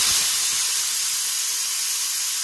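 Stovetop pressure cooker venting steam through its whistle weight, a steady hiss: the cooker has come up to pressure.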